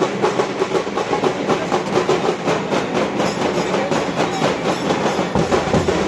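Loud, fast, unbroken drumming of a street procession, with the noise of the crowd around it.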